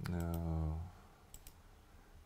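A man's voice held on a drawn-out hesitation sound for under a second, then a couple of quick computer-mouse clicks about a second and a half in.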